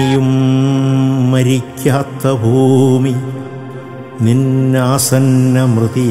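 A man chanting in long, low held notes that slide smoothly in pitch, with short breaks between phrases, over musical accompaniment.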